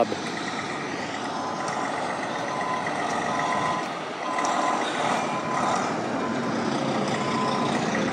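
Heavy diesel tow trucks running, with a back-up alarm beeping repeatedly as one of the rotator wreckers reverses.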